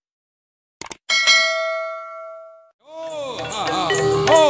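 Two quick clicks, then a bright bell-like chime that rings and fades over about a second and a half: a logo sound effect. About three seconds in, music for a Javanese gedruk dance fades in, its melody swooping up and down in pitch.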